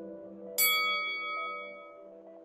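Soft ambient music drone with a single bright bell-like chime struck about half a second in, its high tones ringing out and fading over about a second and a half: a notification-bell sound effect for an animated subscribe-button click.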